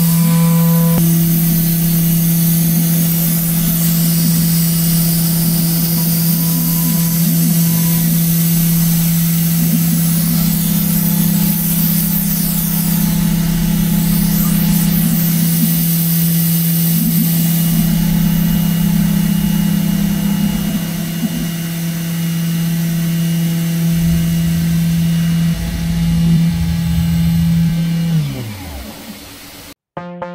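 Milling-machine spindle cutting a clay car model, running at a steady high pitch with irregular cutting noise over it. About two seconds before the end the spindle spins down, its pitch falling away.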